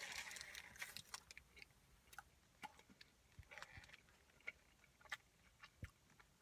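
Quiet chewing of a bacon, egg and cheese croissant sandwich: scattered faint mouth clicks and soft crunches, spaced irregularly.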